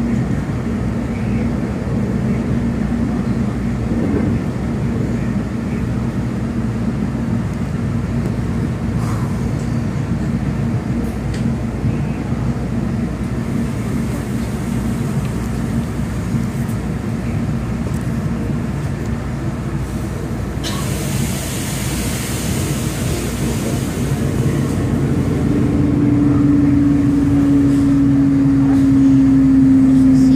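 A South Shore Line electric commuter train running along, heard from inside the car as a steady rumble of wheels and running gear. A few seconds of hiss come in about two-thirds of the way through. Near the end a loud steady tone rises above the rumble and slowly slides down in pitch.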